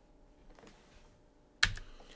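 Faint, scattered clicks of a computer keyboard and mouse, with one sharper click near the end.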